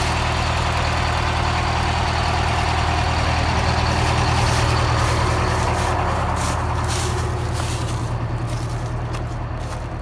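Detroit Diesel 8V71 two-stroke V8 diesel in a 1980 GMC RTS bus idling steadily, growing a little quieter near the end.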